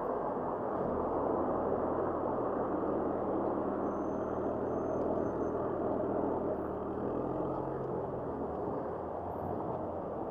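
Muffled rush of wind and road noise from a camera on a moving bicycle, with the low steady hum of car engines in slow traffic close by that drops away about eight seconds in.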